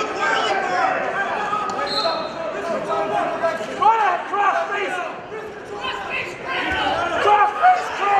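Spectators and coaches shouting in a reverberant gym, several voices overlapping, with a few dull thumps.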